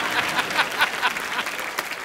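Studio audience applauding, a dense patter of many hands clapping that eases off a little toward the end.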